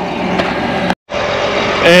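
Steady hum of a tractor engine idling, broken by a brief moment of dead silence about a second in.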